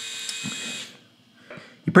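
Pitbull Gold electric skull shaver's motor running with a steady whine, then switched off and dying away about a second in.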